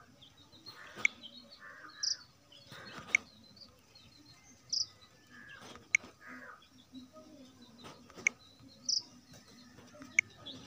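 Faint background sound with a few short, high bird chirps and several sharp clicks.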